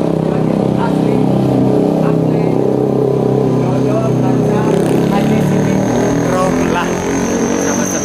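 Street traffic of motorcycles and cars running close by, a steady loud engine drone. A thin high whine joins about halfway through.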